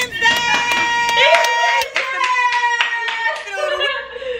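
A high voice singing long held notes over a steady clapping beat, the soundtrack of a TikTok clip playing from a phone.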